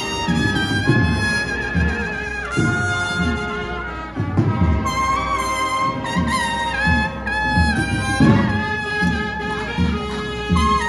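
Cornet-and-drum band (banda de cornetas y tambores) playing a Holy Week processional march: bugle-like cornets carry a sustained melody with vibrato over a steady beat of drums.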